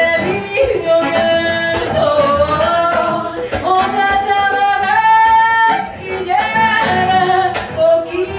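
A woman singing a wordless melody with long held high notes and slides between pitches, over instrumental accompaniment with sharp percussive taps.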